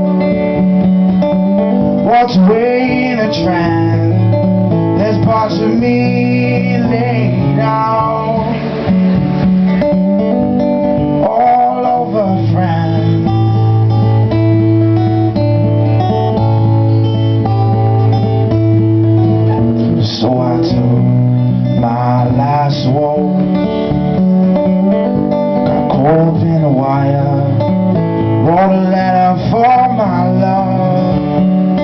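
Acoustic guitar strummed steadily through a slow song, with a man's voice singing in several short phrases over it.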